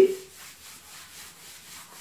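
A blackboard eraser rubbing across a chalkboard, wiping off chalk writing in faint, repeated back-and-forth strokes.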